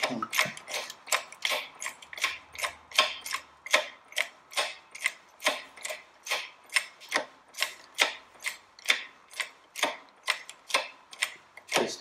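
Hydraulic shop press being worked, its mechanism clicking evenly about three times a second as the ram comes down onto the valve-guide tool; the clicking stops just before the end.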